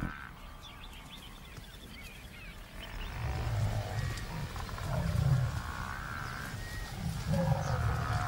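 Deep grunting calls from an African buffalo herd: several low, drawn-out calls, each about a second long, starting about three seconds in over a faint background hush.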